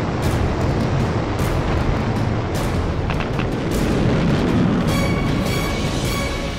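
Sound-effect rocket noise for the sky crane's descent-stage thrusters, a steady, dense, low rushing noise, with music over it. About five seconds in, held musical tones come in.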